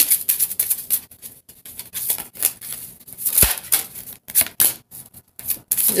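A deck of tarot cards being shuffled by hand: a run of quick, irregular papery clicks and flicks as the cards slide against each other.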